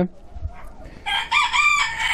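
A rooster crowing once, starting about a second in: one long pitched call that drops in pitch at its end.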